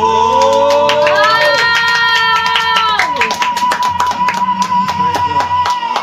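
A female singer holding one long high note in a live pop ballad over backing music. Hands clap repeatedly over it.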